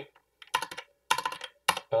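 A handful of separate keystrokes on a computer keyboard, with short pauses between them, as a new line of code is typed.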